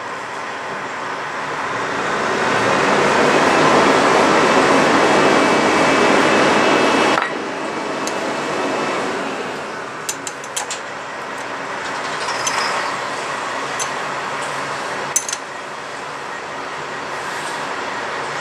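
A steady rushing noise that swells and then cuts off suddenly about seven seconds in, followed by a quieter rush with a few small metallic clicks from a nut and tool being fitted to a motorcycle brake lever pivot bolt.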